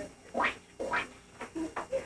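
Four or five short vocal sounds, each a fraction of a second, spread over two seconds.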